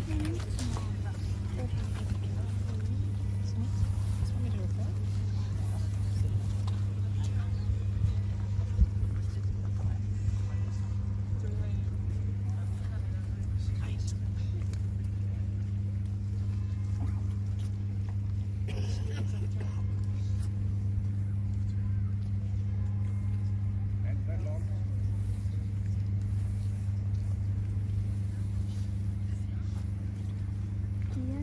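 Indistinct chatter of bystanders over a steady low hum that runs unchanged throughout, with a few faint clicks.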